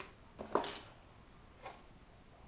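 A few faint, brief handling sounds: a soft click at the start, a sharper short click-and-rustle about half a second in, and a smaller one near the end, over faint room hiss.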